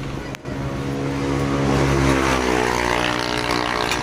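A motor vehicle engine running close by, growing louder and then falling slowly in pitch as it passes, with a single sharp click about a third of a second in.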